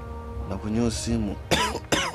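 A person's wordless vocal sounds over steady background music: two short, low sounds about halfway through, then two louder, higher-pitched cries near the end.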